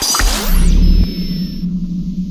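Synthesized logo-reveal sound effects: a whoosh into a deep bass hit about half a second in, then a steady low electronic drone with a thin high tone and sweeps falling in pitch.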